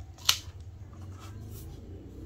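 A sticker being handled and pressed onto a MacBook Air's aluminium lid: one sharp crackle about a third of a second in, then faint rubbing and rustling.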